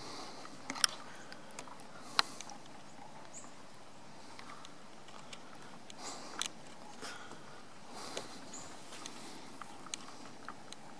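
Quiet outdoor background hiss broken by a few sharp clicks, the two loudest about a second and two seconds in, with fainter ticks later.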